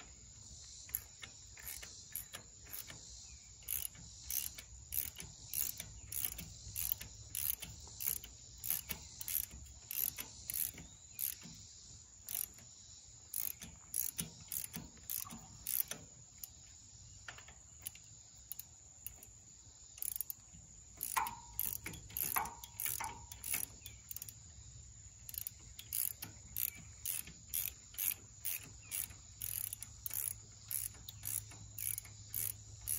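Hand ratchet wrench with a socket clicking as a bolt is turned into the tractor's rear housing. The clicks come in quick back-and-forth strokes, in short runs separated by pauses, with a brief squeak a little after the middle.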